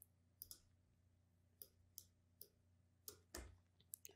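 Several faint, scattered clicks of a computer mouse against near silence.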